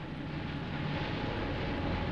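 A steady engine rumble with a hiss over it, slowly growing louder, with a faint thin whine coming in about halfway through.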